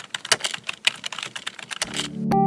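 Computer keyboard typing sound effect: a fast, uneven run of key clicks, as if a web address were being typed into a search bar.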